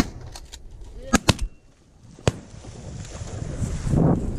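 Shotgun shots at incoming ducks: a sharp shot at the very start, two more in quick succession about a second in, and a last one just after two seconds.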